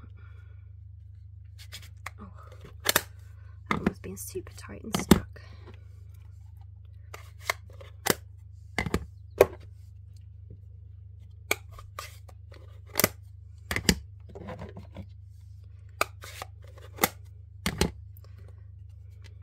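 Irregular sharp clicks and knocks of hard craft supplies being handled and set down on a desk while they are put away, over a steady low hum.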